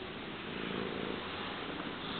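Siamese cat purring steadily as its belly is rubbed.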